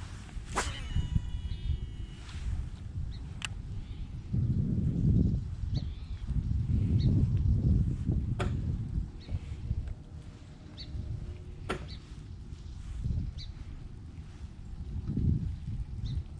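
A cast with a Shimano SLX DC baitcasting reel: a sharp click, then a brief thin whine from the reel that fades out within about two seconds as line pays out. Low rumbling noise follows, with a few scattered clicks as the lure is worked back.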